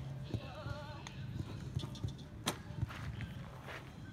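Horse cantering on sand arena footing: a run of dull hoofbeats, with a sharp click about two and a half seconds in.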